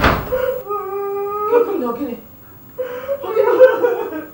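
Wordless human cries: a sharp gasp at the start, then two long, drawn-out wavering cries.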